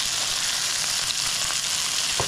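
Ground-beef Salisbury steak patties searing in butter in a nonstick skillet over medium-high heat: a steady sizzle with a few small pops.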